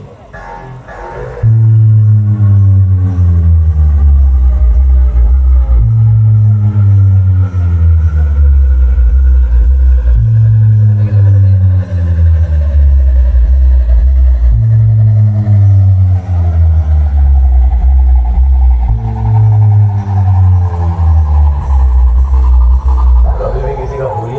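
Bass sound-check track played loud through a large DJ speaker system: deep bass notes step down in pitch, the pattern repeating about every four seconds, under a thin tone that rises slowly throughout. It comes in loud about a second and a half in.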